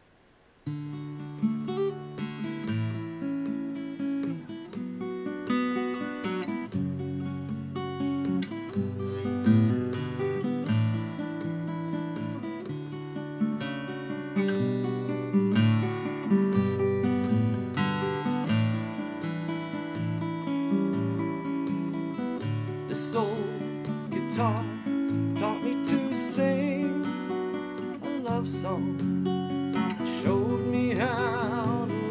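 Seagull Natural Elements Mini Jumbo acoustic guitar with a solid spruce top, fingerpicked with two fingers: a steady flow of plucked bass notes and chords that starts about a second in.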